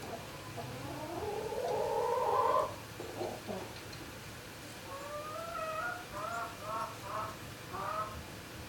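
Poultry calling: one long drawn call rising in pitch over about two seconds, then, after a pause, a run of short calls at about three a second near the end.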